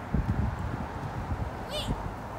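Footsteps crunching on wood-chip mulch, thudding irregularly, with a brief high-pitched call near the end.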